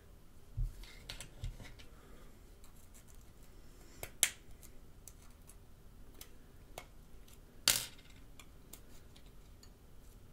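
Small metallic clicks and taps as a SIM eject tool is pushed into the pin hole of an iPhone 5S and the SIM tray pops out. There are two sharper clicks, one about four seconds in and one near eight seconds, among fainter ticks and soft handling bumps.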